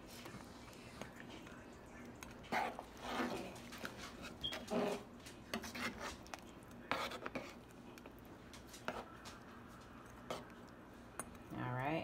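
Metal spoon stirring a thick stew in a large metal pot, with scattered clinks and scrapes of the spoon against the pot.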